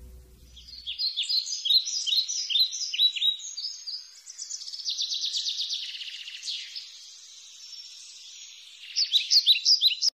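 Songbirds chirping: a run of quick, high downward chirps, about three a second, then a rapid trill in the middle, with more sharp chirps near the end. Guitar music fades out in the first second.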